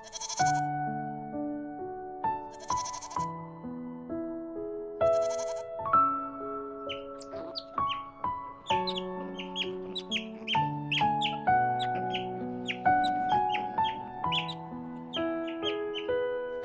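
Instrumental background music with a gentle melody, and a goat bleating three short times during the first six seconds.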